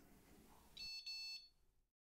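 A short, faint, buzzy electronic beep in two quick parts, about a second in.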